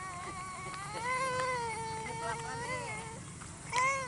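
A toddler's long, drawn-out whining cry starting about a second in and held for about two seconds, falling slightly in pitch, with another cry beginning near the end.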